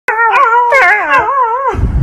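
A puppy howling: a high, wavering cry that rises and falls in pitch for about a second and a half, then breaks off. Near the end it gives way to a low rumbling noise.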